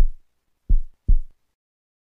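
Heartbeat sound: low, short lub-dub thumps at about one beat a second. The second thump of one beat falls at the very start, one more full lub-dub follows, and then it stops.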